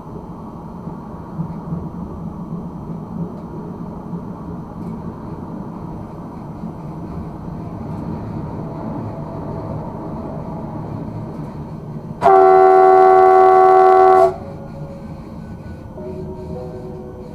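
Electric multiple unit (RegioPanter) running at speed, with steady rail and traction noise heard from inside the cab. About twelve seconds in, the train's horn sounds one loud, steady blast of about two seconds, then cuts off.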